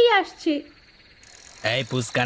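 Crickets chirring steadily, with a street vendor's sing-song cry for fuchka ('mojar fuchka') that trails off in the first half-second. A deeper voice starts calling again near the end.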